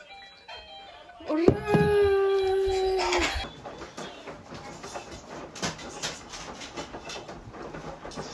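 A woman's long drawn-out cheer of "Ura!" ("hooray!") as the electricity comes back on, followed a moment later by a short puff of breath as she blows out the candles, then quieter rustling and small knocks.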